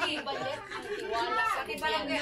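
Indistinct chatter of several people talking casually.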